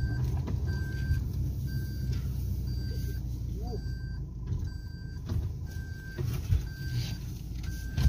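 Car driving slowly on a rough dirt track, heard inside the cabin: a steady low engine and road rumble with a few faint knocks. A short electronic beep repeats about once a second.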